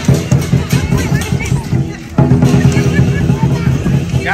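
Lion dance drumming: a large drum beaten in a fast, steady beat. It dips briefly about halfway through, then comes back louder.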